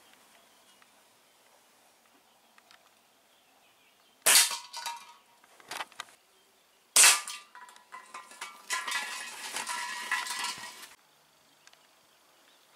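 Two air rifle shots about three seconds apart, each a sharp crack followed by a metallic ring as the pellet strikes a tin can. About a second and a half after the second shot comes a metallic rattling clatter lasting about two seconds.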